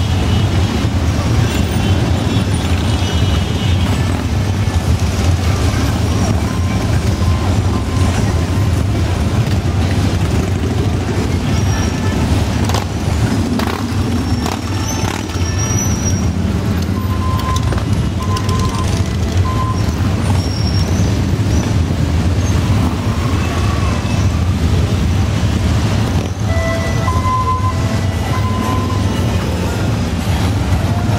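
A large pack of motorcycles, mostly Harley-Davidson V-twins, running at low parade speed in a loud, steady low rumble. Short horn beeps come through now and then in the second half.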